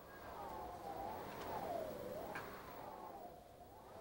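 Strong mountain-summit wind howling, its pitch slowly wavering up and down over a steady rush.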